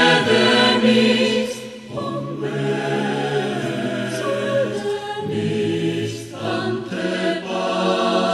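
Mixed choir of men's and women's voices singing a vocal arrangement in held chords that shift every second or two.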